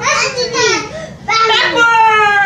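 Young children's high-pitched voices calling out and talking, in two loud stretches, the second starting a little past halfway.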